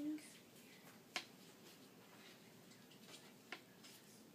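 Two short, sharp clicks about two and a half seconds apart, from handling a nasogastric tube while checking it for kinks; otherwise near silence.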